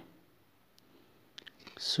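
Near silence in a small room, with a few faint clicks about a second and a half in, then a man starts to speak just at the end.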